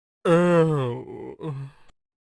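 A cartoon character's voice making a long groan that falls in pitch, followed by two short vocal sounds.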